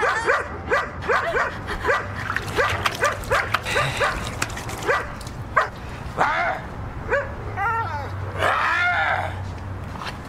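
German Shepherd barking rapidly and repeatedly, about three to four short barks a second through the first half, then sparser, longer cries toward the end.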